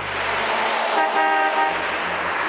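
Steady road-traffic noise with a car horn sounding once, a short honk starting about a second in.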